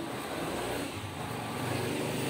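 HP PageWide Pro 477 multifunction printer running a fast draft-quality print job: a steady mechanical whir of sheets feeding through.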